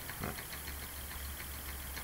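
Reed-switched pulse motor running at a settled speed with a steady low hum.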